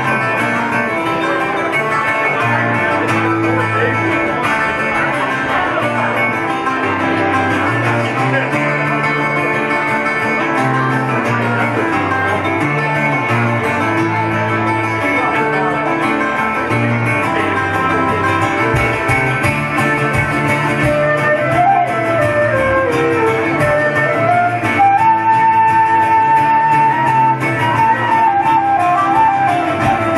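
Celtic folk band playing an instrumental passage with no singing: strummed acoustic guitar and a mandolin-family instrument keep the rhythm while flute and fiddle carry the melody. Near the end the flute holds a high, ornamented line and the playing gets a little louder.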